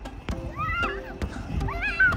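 A young child's high-pitched squeals, two short ones rising and falling in pitch, as she bounces on an inflatable jumping pillow, with a few light thumps.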